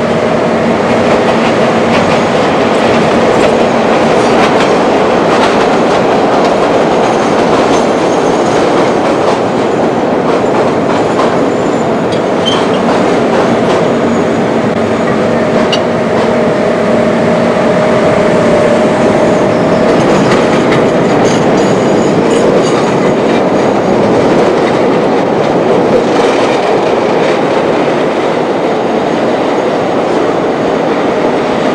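Chicago L rapid transit train running, heard from aboard: a steady rumble of steel wheels on rail, with clicks from the rail joints and a few steady tones underneath.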